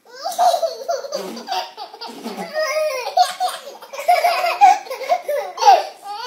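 Babies laughing and babbling in a continuous run of short, bubbly giggles.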